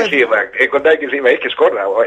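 Speech only: a talk-radio conversation in Greek.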